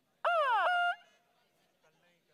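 A loud, high-pitched vocal whoop lasting under a second: a quick falling glide that jumps up into a short held note.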